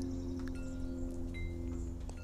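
Chimes ringing: short, clear high tones at several different pitches, one after another, each fading out, over a steady low drone.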